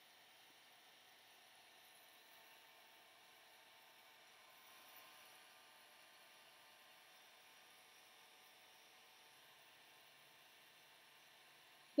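Near silence, with only a faint steady hiss.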